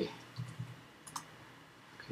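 A few faint, sharp clicks from a computer mouse and keyboard as the browser's address bar is selected and a web address typed in.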